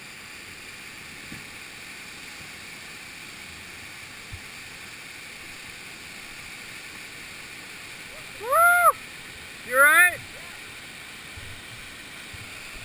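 Steady rush of a whitewater waterfall pouring into its plunge pool. Near the end a person gives two loud whoops, each rising and falling in pitch, about a second apart.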